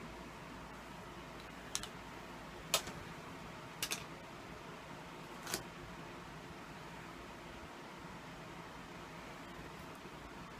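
Quiet, steady low room hum with five short clicks and taps from handling a tablet in its case. Two of the clicks come close together near the middle, and the hum continues alone after them.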